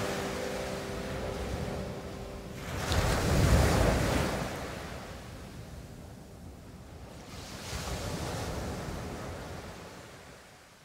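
Ocean-surf sound effect played through the PA as a chill-house track ends: a wash of surf swells up about three seconds in and again near the end, then fades away. The track's last held keyboard notes die out at the start.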